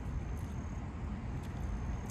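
Low, steady rumble of a car's interior, with a few faint clicks over it.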